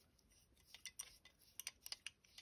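A scatter of faint, light metal clicks in the second half as an adjustable wrench is handled and fitted onto the brass main jet of a 1984 Honda 200X carburetor.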